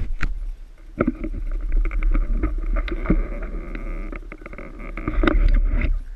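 Trail motorcycle engine running at low revs, under a heavy low wind rumble on the microphone, with many short knocks and rattles throughout.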